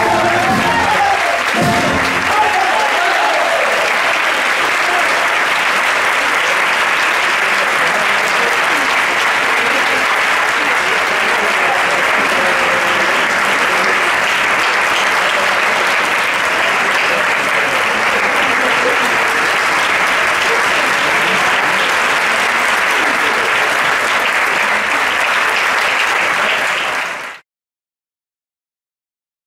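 Audience applause: a long, steady ovation for a wind band and singer. It follows the band's last chord, which dies away in the first two seconds, and cuts off suddenly near the end.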